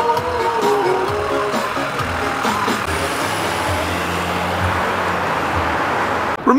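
Music fading out in the first second or two, giving way to steady street traffic noise and the low engine hum of a large bus driving off.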